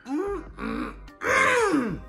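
A man's wordless vocal reaction: two short rising-and-falling sounds, then a longer cry about halfway through that falls steeply in pitch. Faint background music plays underneath.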